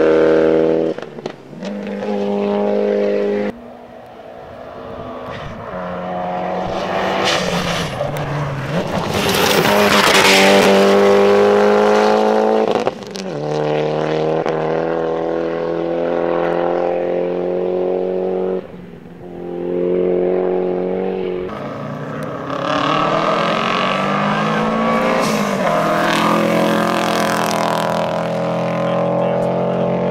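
Rally cars driven hard on a gravel stage, one after another in short cuts: engines held at high revs, with the pitch rising as a car accelerates near the end. Around ten seconds in, a car passes close with a loud rush of gravel and tyre noise.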